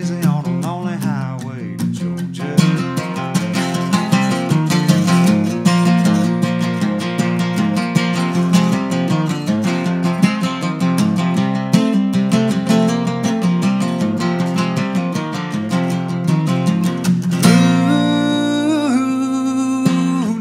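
Acoustic guitar strummed steadily through an instrumental stretch of a solo country song, with a man's sung line trailing off at the start and a long, wavering held sung note near the end.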